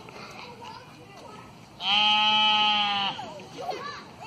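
A sheep bleating once, a single steady-pitched call of a little over a second, starting about two seconds in.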